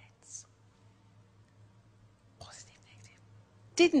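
A pause between spoken words: a low steady hum under faint whispered, breathy sounds, first about a third of a second in and again about two and a half seconds in. A spoken word starts just before the end.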